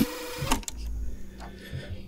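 Tape-machine sound effect: a steady mechanical whir ends in a click, a second click follows about half a second later, then a low rumble that dies away.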